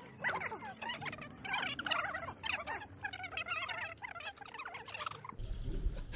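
Small birds chirping and twittering continuously, many quick rising and falling calls. Near the end a low rumble comes in suddenly.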